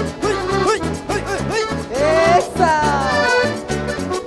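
Instrumental Argentine folk dance music from an accordion-led band over a steady bass beat, with a sliding melodic phrase that rises and then falls through the middle.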